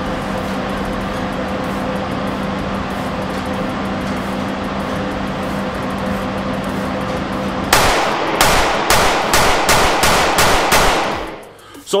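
Steady hum of an indoor range's ventilation system, then about nine 9mm pistol shots from a Ruger Security 9 Compact fired in quick succession over about three seconds, echoing in the range.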